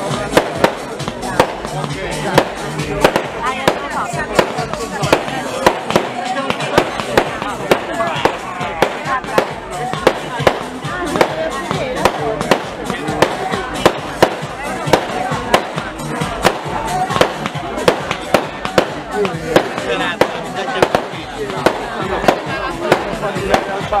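Fireworks display: aerial shells bursting in a steady run of sharp bangs, about two a second, with voices and music underneath.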